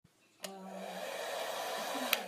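Hair dryer running: a steady whoosh of air over a low motor hum. It starts after a brief silence about half a second in and grows slowly louder.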